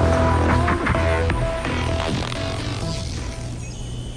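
Electronic background music with held notes, fading out toward the end.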